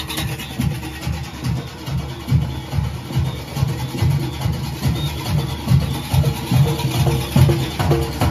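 Junkanoo goatskin drums beating a fast, steady rhythm, the deep strokes repeating about three times a second.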